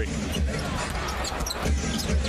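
Arena crowd noise during live NBA play, with a basketball bouncing on the hardwood court a few times.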